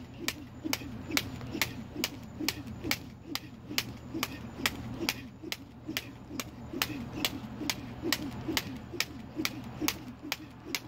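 A jump rope slapping the asphalt driveway with a sharp tick on every turn, about three a second in a steady, even rhythm.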